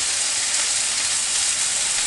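Seasoned steaks searing in a frying pan of oil heated almost to its smoking point: a loud, steady hiss.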